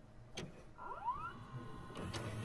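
Video cassette recorder starting playback: a click, then a short rising whine as the tape mechanism's motor spins up, settling into a faint steady hum.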